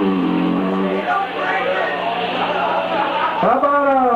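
A man's voice over a PA microphone making indistinct talk and vocal noises, with a steady low tone held under it until about three and a half seconds in. Near the end comes a drawn-out cry that rises and falls in pitch.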